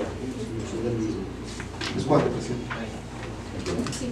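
Low murmured talk among several people around a meeting table, quieter than the main speaker's voice, with a few brief soft rustles.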